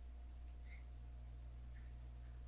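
Faint computer mouse clicks over a steady low hum, the first about two-thirds of a second in.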